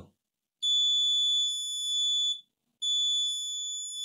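Multimeter continuity beeper giving two long, steady high-pitched beeps, the first about half a second in and lasting nearly two seconds, the second starting near three seconds in, as the probes touch the main power rail. The beep marks near-zero ohms to ground: a shorted main power rail on the logic board.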